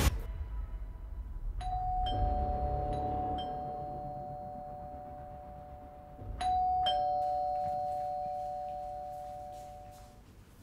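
Two-tone ding-dong doorbell chime rung twice, about five seconds apart: each time a higher note then a lower one half a second later, both ringing out slowly.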